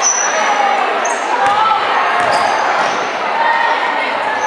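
Basketball game sounds on a gym floor: a ball bouncing and short high-pitched sneaker squeaks on the hardwood, over a steady background of crowd and player voices echoing in a large gym.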